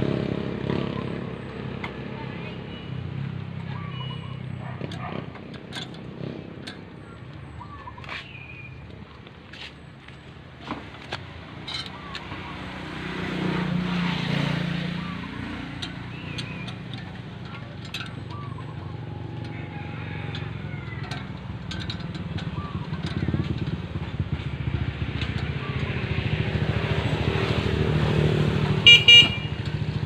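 Motorcycle engines passing on the street, swelling and fading twice, with scattered clicks of tool handling. Near the end a vehicle horn beeps twice.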